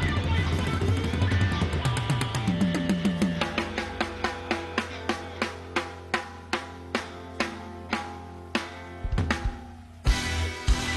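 Drum kit played live. After a busy opening, single strikes come at a steadily slowing pace, from about three a second to about two, with a quick cluster of hits near the end.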